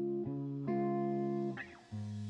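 Intro of a trap instrumental: sustained guitar chords, changing chord about a quarter second in and again before the one-second mark. Near the end the guitar fades, with a short gliding sound and a brief drop to near silence.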